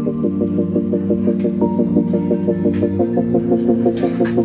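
Background music: a sustained low drone under a pulsing pattern of notes, about four pulses a second, with the bass shifting about three seconds in.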